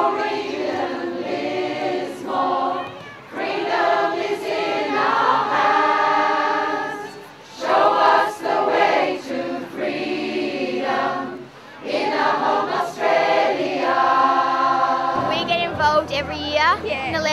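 A choir singing in long held phrases, with brief pauses between them.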